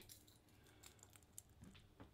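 Near silence, with a few faint light clicks from a crankbait with treble hooks being picked out of a clear plastic tackle box.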